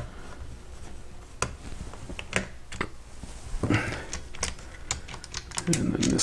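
Scattered light clicks and taps of small screws and hard plastic parts being handled inside an opened radio transmitter, as the last Phillips screw of its power board assembly is removed. The clicks come irregularly, a few at a time.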